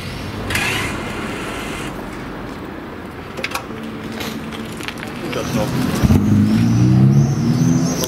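Ferrari SF90 Stradale's twin-turbo 4.0-litre V8 firing up about six seconds in and then idling steadily, as the hybrid switches from silent electric running to the combustion engine.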